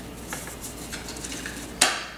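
Plastic Hatchimal toy egg being shaken and handled, with light rattling and clicking and one sharper click near the end.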